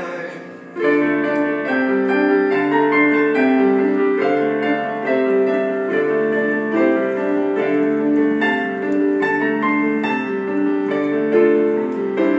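Casio digital piano playing an instrumental passage of chords in a steady rhythm, with no voice. A held chord fades out at the start, and the playing picks up again just under a second in.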